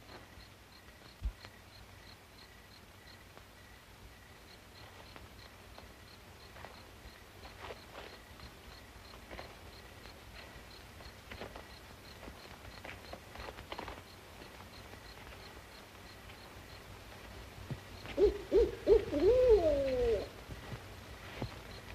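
Owl-like hooting near the end: several short hoots in quick succession, then a longer call that rises and falls, over a faint night background.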